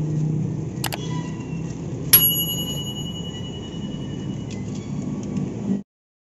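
Steady low vehicle rumble, with a couple of faint clicks about a second in and a single sharp metallic clink about two seconds in that rings on with clear tones for about two seconds. All sound cuts off abruptly near the end.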